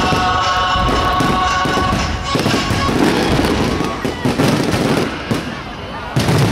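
Fireworks display: aerial shells bursting with dense, rapid crackling all the way through.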